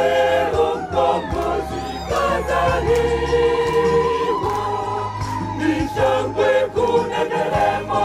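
A church choir singing a hymn in unison and harmony, with held notes over a steady low bass accompaniment and percussive beats.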